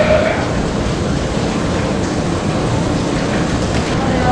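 Steady rushing background noise with a low rumble, without distinct events.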